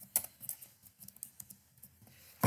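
Computer keyboard being typed on: a quick run of faint key clicks as one word is typed out, stopping shortly before the end.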